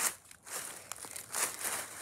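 Dry fallen leaves crunching under bare hands and feet stepping on all fours, in several separate crunches.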